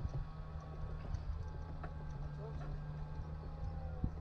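E-Z-GO golf cart driving up on a paved cart path: a steady motor hum over a low rumble, the hum's pitch sinking a little near the end as the cart slows to a stop.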